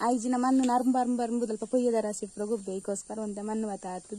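A woman talking, steady continuous speech; only speech.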